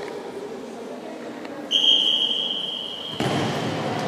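A referee's whistle gives one long, steady blast of about a second and a half, starting just before the middle. Then the noise of players moving and calling out, echoing in the sports hall, swells up near the end.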